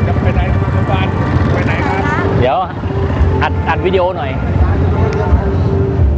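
Motorcycle engines running slowly close by in a crowded street, a steady low rumble, with voices of the crowd calling out over it.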